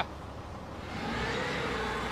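A motor vehicle engine running, coming up about a second in and then holding steady.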